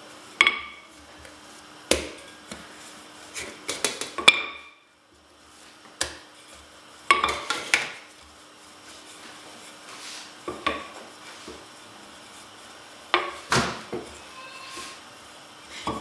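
Wooden rolling pin knocking and clacking against the work surface while bread dough is rolled out: sharp, irregular knocks every second or two, some in quick clusters, a few with a brief ring.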